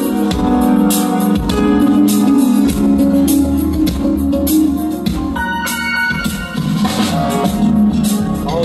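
Recorded music played loud through a PA speaker system: sustained keyboard chords over strong bass, with drum hits. The bass is full, and the listener judges it good on this speaker.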